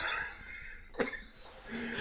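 Soft, breathy laughter trailing off, with one short cough about a second in.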